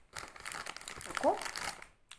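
Plastic snack packaging crinkling as it is handled, a dense crackle of fine clicks. A short rising vocal sound comes about a second in.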